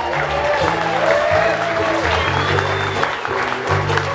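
Bluegrass band playing: an upright bass walks through low notes while a fiddle slides between pitches, with guitar and mandolin behind. An audience applauds over the music.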